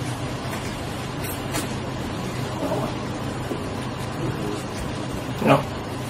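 Room tone with a steady low hum and faint murmuring voices, broken by one short, sharp sound about five and a half seconds in.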